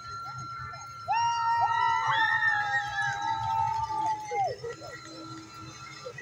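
A horn blast: a steady tone that comes in sharply about a second in, holds for about three seconds and sags away, with other steady tones overlapping it.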